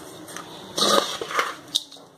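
A hand stirring and raking a dry, crumbly mixture of crushed wheat, jaggery, peanuts and roasted gram in a steel bowl: a soft rustling scrape, with two louder scrapes of the crumbs against the metal about one and one-and-a-half seconds in.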